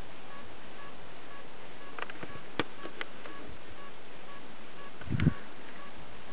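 Steady hiss of a camcorder's own recording noise, with a faint short tone repeating about every half second. A few sharp clicks come two to three seconds in, and a brief low thump near the end is the loudest sound.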